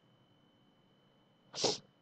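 Near silence, then about one and a half seconds in a person's single short sneeze.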